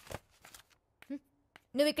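Paper rustling in short bursts as pages of a book are handled, within the first second, then a quiet pause before a voice starts speaking near the end.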